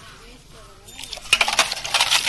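Hands groping in a stainless steel pot of water, with quick metallic clinks and rattles against the pot's steel sides. The clinking starts a little past the halfway point, after a quieter first second.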